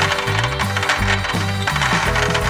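Dozens of small balls pouring out of a glass jar and clattering and bouncing across a clear plastic stand: a dense run of quick clicks, over background music.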